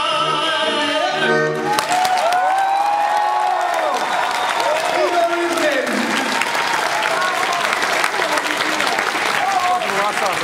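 Two male voices and an accordion hold the final chord of a song, which stops about a second and a half in; the audience then bursts into applause, with shouts of cheering over the clapping.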